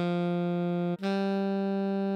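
Alto saxophone melody played at half speed for practice: a held written D, then a step up to a held written E about a second in.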